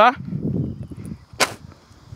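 A single sharp smack about one and a half seconds in, over a faint low rumble.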